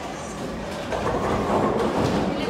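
A ten-pin bowling ball rolling down the lane, a steady rumble that grows louder about a second in.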